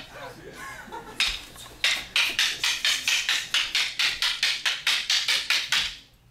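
Wooden fighting sticks clacking against each other in a fast, rhythmic stick-fighting exchange, about five sharp strikes a second, starting a second or two in and cutting off at the end.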